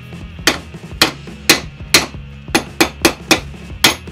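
A glued-up, 3D-printed PETG axe handle is banged hard against a steel bench vise in a test of whether it is solid and tough. There are about nine sharp knocks, roughly two a second at first, then faster and less even toward the end.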